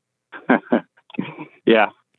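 Only speech: a man's voice over a telephone line, a few short hesitant sounds and then "yeah", starting after a brief silence.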